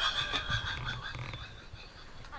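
An added sound effect: a steady pitched tone, loudest in the first half-second and then fading away.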